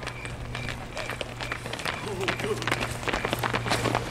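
Quick footsteps and knocks, getting busier in the second half, with brief voices about two seconds in, over a steady low hum.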